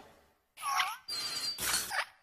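Short cartoon sound effects for an animated logo: after a brief silence come three quick sounds in a row, the first with a pitch that dips and rises again, the second carrying a thin steady high whistle.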